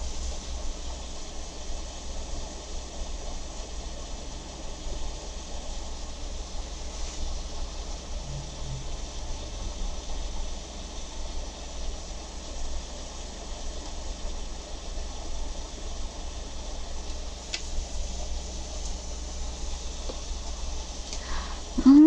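Steady background hiss with a low hum underneath, like room noise from a fan, holding level with small irregular fluctuations.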